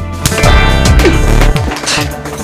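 A single open-hand slap across the face near the start, followed by loud dramatic music.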